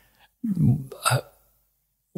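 A man's voice: a brief, hesitant "uh" with a sharp catch of breath, then nothing.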